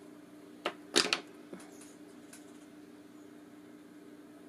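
A quick cluster of sharp clicks and knocks, a second or so in, as small craft tools such as spring-loaded scissors are handled and set on the tabletop, over a steady low hum.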